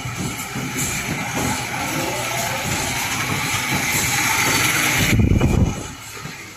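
Corrugated-box folder gluer line running: a steady noisy mechanical hiss and clatter that builds over several seconds, then a heavy low rumble for about half a second near the end.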